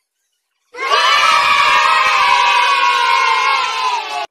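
A group of children cheering together, a celebratory 'yay' sound effect, starting suddenly about three-quarters of a second in and held for several seconds.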